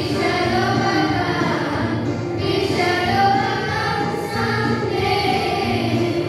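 A group of girls singing together, holding long notes.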